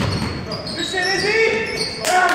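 A basketball bouncing on a hardwood gym floor near the start, then players' shouting voices echoing in the hall.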